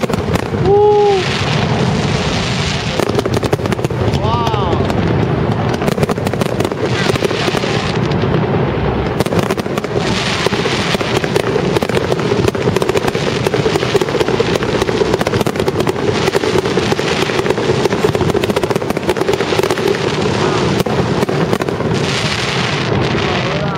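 Fireworks display with aerial shells bursting and a dense, continuous crackle of many small pops. Crowd voices murmur throughout, with short exclamations at the start and again about four seconds in.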